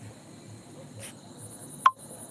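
Crickets chirping in a steady, pulsing high-pitched trill. Just before the end comes a single sharp click, the loudest sound.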